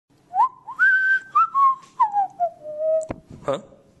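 A person whistling a short, carefree tune: the notes swoop up into a few higher notes, then step down to a long, held low note. A sharp click comes just after the whistling stops.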